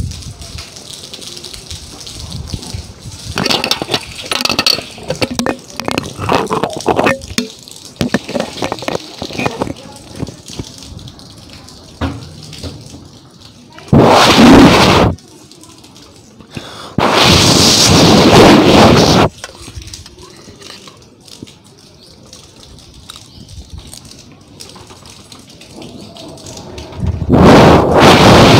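Cyclone wind gusting against the microphone: a loud buffeting rush about halfway through, a longer one of about two seconds a little later, and another near the end. Between the gusts there is a lighter crackling noise.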